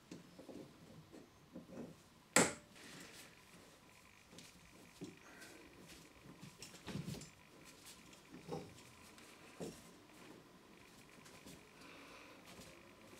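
A pipe slice (rotary pipe cutter) being turned by hand around copper pipe to cut it: faint scraping and scattered light knocks, with one sharp click about two seconds in.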